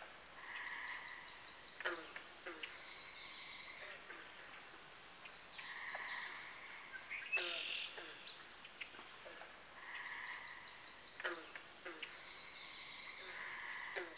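Faint bird calls: a short phrase of chirps and high trills with a few quick falling notes, repeating about every four to five seconds over a light hiss.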